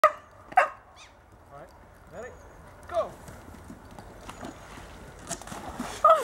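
English cocker spaniel barking and yelping in excitement, several separate calls. The loudest come at the very start, just after half a second and about three seconds in. A splash of water begins right at the end.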